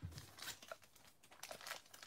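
Faint crinkling of a baseball card pack's wrapper being handled, a few short crackles with a quiet moment around the middle.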